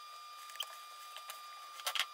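Cardboard box flaps being folded shut by hand: a few light scattered rustles and taps, with a sharper crackle of cardboard near the end.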